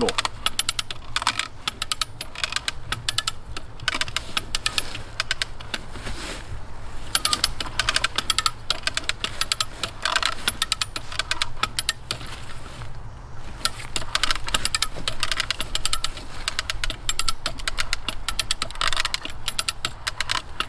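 Ratcheting hand winch being cranked, its pawl clicking rapidly in long runs with brief pauses about six and thirteen seconds in. Each stroke draws the static rope tighter, raising the load on the hitch from over 600 to over 800 pounds.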